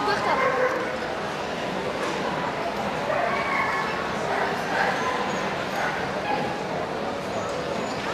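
Dogs barking and yipping in short calls over a background of crowd chatter.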